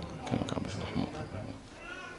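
Faint, scattered voices of listeners in the room during a pause in the recitation, with a short high-pitched call near the end.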